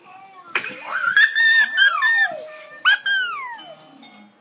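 Two loud, high-pitched squeals: the first begins about a second in, holds and then slides down in pitch; the second, shorter, near the three-second mark, falls steeply.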